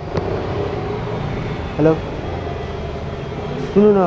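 Motorcycle engine idling with a steady low rumble.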